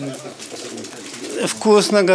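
An elderly man speaking in short phrases, with a pause of about a second between them.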